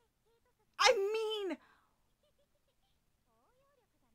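A single short, loud, wavering cry about a second in, lasting under a second and falling in pitch at the end, cat-like in tone.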